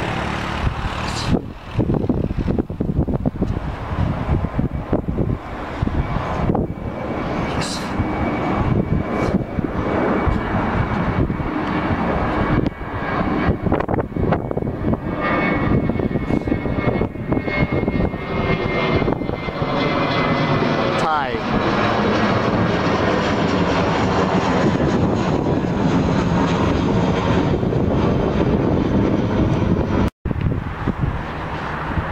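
Jet engines of a twin-engine airliner climbing out after takeoff and passing overhead: a loud, steady rushing noise. It is broken by brief gusty flutters in the first half, carries a faint high whine around the middle, and settles into a steadier, fuller sound in the last third.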